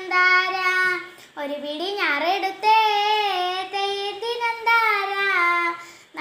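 A young girl singing a Malayalam folk song (nadan pattu) about farming, solo and unaccompanied, holding long, wavering notes, with a short break for breath a little over a second in.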